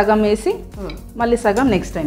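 Metal kitchen utensils and dishes clinking lightly while ingredients are handled, with a woman's voice in short bursts.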